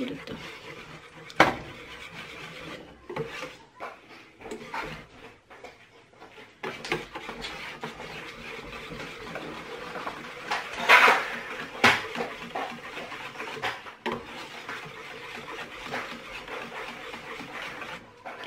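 Wire whisk beating a leche flan custard mixture in a stainless steel bowl, the metal wires clinking and scraping against the bowl. A few sharp knocks come early on, and the whisking grows busier after about seven seconds, with a louder flurry of clinks a little past the middle.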